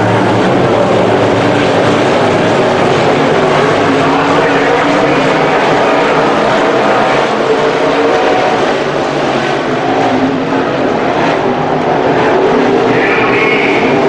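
A field of IMCA modified dirt-track race cars racing together, their V8 engines running loud and steady under throttle.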